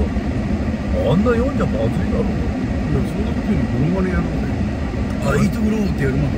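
Mostly speech: a man talking in Japanese inside a car, over the car's steady low cabin hum.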